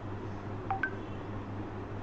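Two short electronic beeps just under a second in, a low one followed a moment later by one about an octave higher, over a steady low electrical hum.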